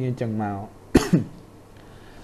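The narrator's voice for a moment, then a single short cough about a second in.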